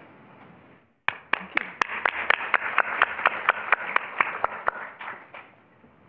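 Audience applauding, a modest crowd with individual hand claps standing out. It starts about a second in and fades away near the end.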